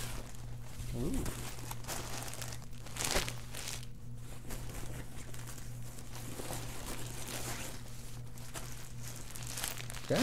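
A clear plastic bag holding skeins of yarn crinkling and rustling as it is handled, in irregular bursts, the loudest about three seconds in.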